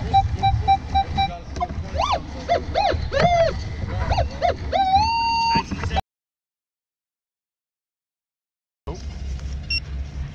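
Minelab Equinox metal detector beeping over a buried target, a repeated tone about four times a second, followed by warbling tones that rise and fall and a tone that rises and then holds. The sound then cuts out completely for about three seconds. Near the end a handheld pinpointer beeps rapidly as it probes the dug hole.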